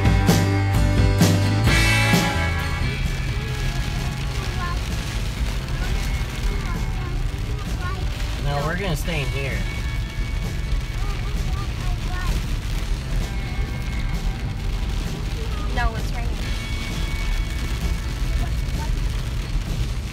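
Background music ends about two seconds in. A steady low rumble follows: an off-road truck's engine and tyres on a wet dirt track, heard from inside the cab, with brief faint voices now and then.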